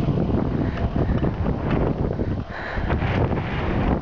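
Wind buffeting the camera's microphone: a loud, gusty rumble that rises and falls.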